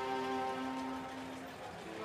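Slow, sad background score of bowed strings holding long notes, easing off near the end.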